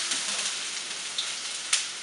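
Chopped onion sizzling as it fries in hot coconut oil in a pan, a steady hiss, with one sharp click near the end.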